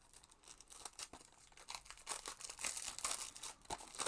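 Cellophane shrink-wrap being torn and peeled off a plastic Blu-ray case: irregular crinkling and crackling, getting busier after about two and a half seconds.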